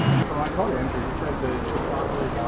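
A low subway-platform hum cuts off a quarter second in, giving way to city street ambience: distant traffic with passers-by talking faintly.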